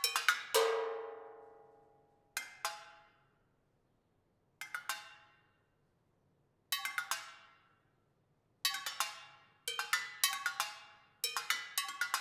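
Metal percussion struck with drumsticks: a cowbell, tin cans and a car brake drum, played in short rhythmic clusters with pauses between them. Each strike rings and fades. A strike about half a second in rings out for about two seconds, and the clusters grow longer and busier near the end.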